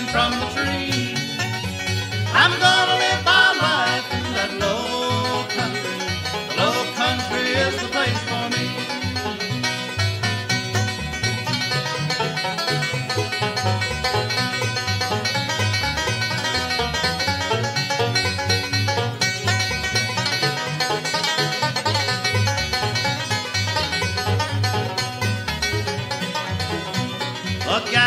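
A bluegrass band playing an instrumental passage: banjo out front over guitar, bass and fiddle, with a steady bass pulse underneath.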